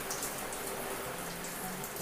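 Shower water falling steadily onto a person and a tiled wall, a continuous even hiss of spray.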